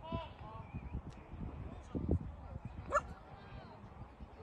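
Short shouts and calls across a rugby pitch, with a sharp rising yelp about three seconds in and a few dull low thumps on the microphone.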